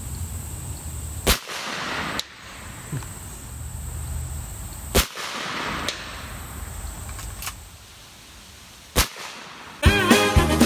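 Three shots from an air rifle at long range, about four seconds apart, each a short sharp report.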